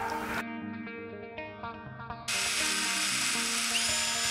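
Background music, then a bit past halfway a cordless impact driver with a right-angle attachment starts driving a screw through an aluminum stair post mount, running steadily under the music.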